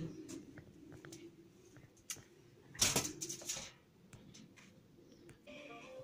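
Faint handling noise from a phone held in the hand: a few light clicks and one brief rustle about three seconds in.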